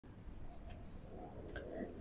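Faint, irregular scratchy rustling: handling noise from the phone and handheld microphone being moved about.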